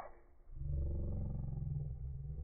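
Slow-motion playback of the soundtrack, stretched and pitched far down into a deep, low growling drone. It drops away briefly just after the start and then comes back at full level.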